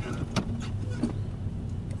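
Steady low engine and road rumble inside a moving Nissan SE-R's cabin at cruising speed, with a couple of faint short clicks.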